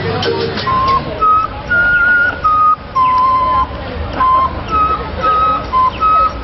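A melody blown through cupped hands: clear, pure single notes, each held briefly and stepping up and down in pitch, starting about a second in as background music with rattling percussion fades out.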